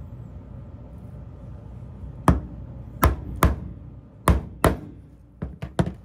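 A flat metal blade chopping down through a set cake of beeswax-and-tallow black ball onto a cardboard-covered board. About two seconds in come five sharp knocks, spaced under a second apart, and near the end a quicker run of three lighter ones.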